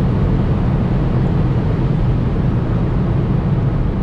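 Inside the cabin of a 2019 VW Golf GTI Performance travelling at over 200 km/h: a steady low rumble of road and wind noise, with the 2.0-litre turbocharged four-cylinder engine staying in the background.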